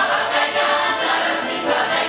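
Russian folk choir of women's and men's voices singing a folk song.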